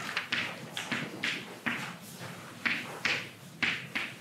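Chalk on a blackboard: a string of short, scratchy strokes and taps at irregular intervals as lines, boxes and labels are drawn.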